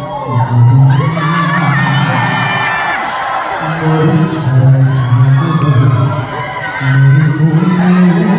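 A live trot song over a loud concert sound system: a bass-heavy backing track under a man singing into a microphone, with the audience cheering and whooping.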